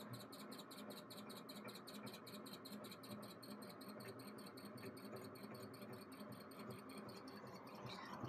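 Faint sound of a laser engraver raster-engraving: the head travels back and forth under its stepper motors, giving an even rhythm of short high ticks about seven times a second over a low steady hum.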